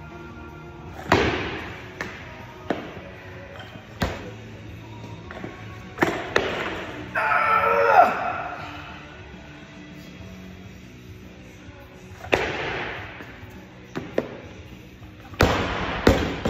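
Music playing over scattered thuds, then near the end a barbell loaded to 125 kg with rubber bumper plates dropped onto the lifting platform: a loud thud followed by several bounces.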